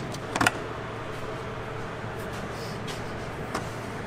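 Steady low mechanical hum with a few light clicks and knocks of hands handling parts in an engine bay, two of them about half a second in and one near the end.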